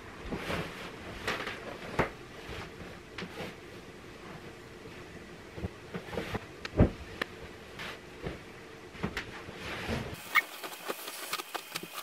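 Bedding being stripped off a bed by hand: irregular rustling and swishing of sheets, pillowcases and blankets, with scattered soft knocks as pillows and covers are pulled and dropped.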